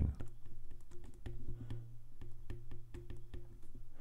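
Stylus tip tapping and clicking on an iPad's glass screen while handwriting, many quick irregular clicks over a low steady hum.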